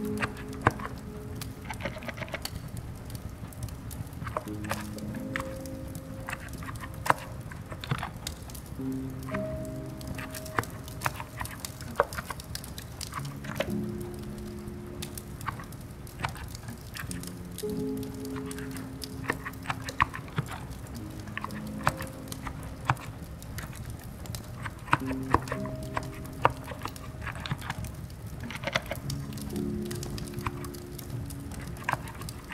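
Slow, soft music of held low notes, layered over an ambience bed of steady rain hiss and fireplace, with irregular light clicks and crackles scattered throughout.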